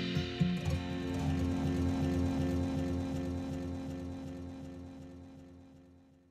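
Music with a steady low pulse and held notes, fading out to silence near the end.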